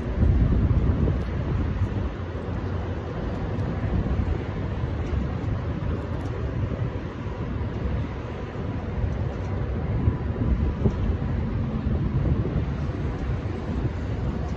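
Wind buffeting the microphone: a steady low rumble that rises and falls.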